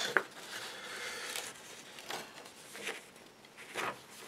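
A fold-out paper instruction sheet being handled: faint rustling with a few short, soft crinkles as the paper shifts.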